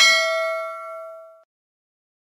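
Notification-bell 'ding' sound effect: one bright bell strike that rings on in several tones and fades out about a second and a half in.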